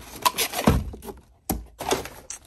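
Handling knocks and clicks as a three-wick candle is taken out and handled: a few light taps, a low thump under a second in, and a sharp click about a second and a half in.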